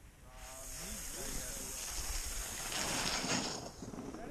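A snowboard sliding over packed, groomed snow: a scraping hiss that builds after the first half-second as the rider picks up speed, with wind on the microphone.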